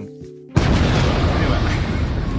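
Edited-in explosion sound effect: a sudden blast about half a second in, followed by a long, loud rush of noise with a heavy low end.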